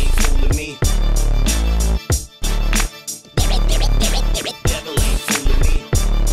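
Instrumental hip hop beat with heavy bass and drums, with DJ turntable scratching cut in over it; no vocals.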